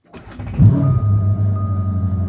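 Supercharged Corvette C7 V8 starting: a brief crank, then the engine catches with a loud flare about half a second in and settles into a steady idle.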